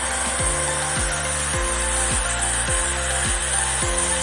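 The steady rush of churning water at a river waterfall and its rapids, loud and even, over background music with a regular low beat.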